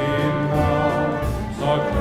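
Symphony orchestra playing a light melody, with the trombones prominent among the brass.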